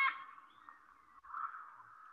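Faint, harsh macaw scream coming through video-call audio, starting about a second in.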